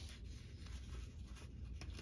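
Faint rustling of printed paper pages in a ring binder being handled, with a few light clicks.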